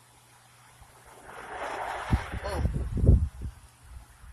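A gust of wind rises through pine trees about a second in, rushing through the needles. Low wind buffeting on the microphone comes near the end and is the loudest part.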